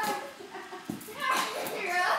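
Young girls' excited voices, shouts and squeals during rough play, with a few short knocks and rustles of things being handled and thrown.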